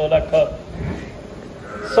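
A buffalo calling in the shed, short and pitched, among a man's voice.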